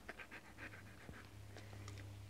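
A dog breathing in a faint, quick run of short puffs that stops about halfway through.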